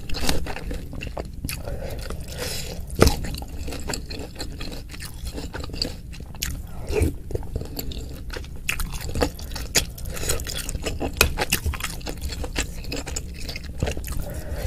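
Close-miked chewing of chewy tapioca-starch meatballs (bakso aci), with many small wet mouth clicks and smacks and a sharper click about three seconds in.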